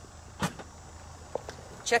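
Liftgate of a 2018 Chevrolet Equinox being opened: a sharp latch click about half a second in, a couple of lighter ticks as the gate lifts, over a steady low outdoor hum.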